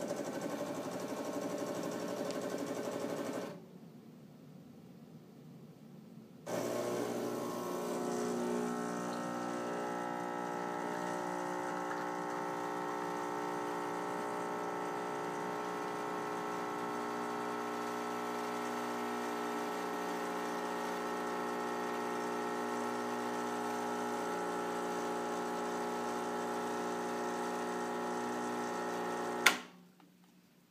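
Rancilio Silvia espresso machine's vibratory pump buzzing in a short burst of about three and a half seconds, pausing for about three seconds, then running steadily through the rest of the shot: the staged pre-infusion and brew cycle of an automatic controller preset. It cuts off with a sharp click near the end.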